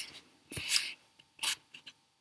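Two brief rustling, rubbing noises close to a microphone: a longer one about half a second in and a short one about a second later.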